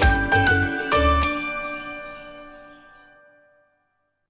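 Bright jingle music of a TV programme ident ending: a few quick notes over bass hits, then a final chord about a second in that rings out and fades to silence within about two seconds.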